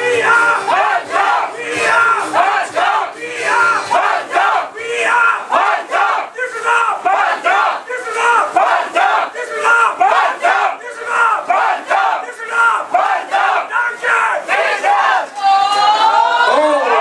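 A group of sports fans chanting together, many voices shouting short syllables over and over in a steady rhythm.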